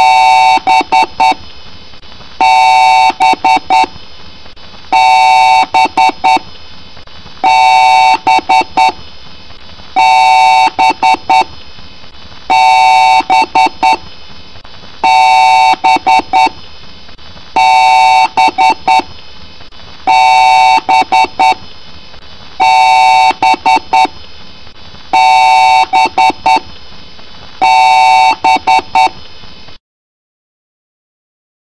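Computer BIOS/POST beep code: groups of rapid, loud electronic beeps, each group about a second long, repeating about every two and a half seconds, with the pitch-shifted, layered sound of a 'G Major' edit. It cuts off suddenly near the end.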